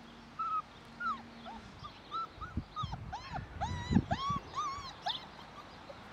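Five-week-old husky puppy whining: a string of short, high whimpers, sparse at first, then coming faster and louder from about three to five seconds in.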